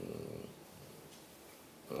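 A man's short breath in a pause between sentences, then quiet room tone with a faint hum. Speech starts again right at the end.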